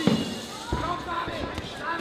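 Boxing gloves landing punches: a sharp smack right at the start and another about three-quarters of a second in, with shouts from the crowd.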